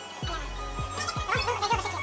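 Background music with a steady bass-drum beat and sustained low bass notes.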